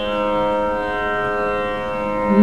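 Carnatic vocal concert music with violin accompaniment: a soft passage of long, steady held notes with no drum strokes.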